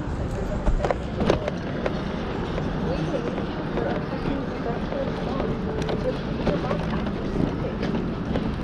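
City street ambience: traffic running on the road and background voices of people on the sidewalk, with a couple of sharp clicks about a second in.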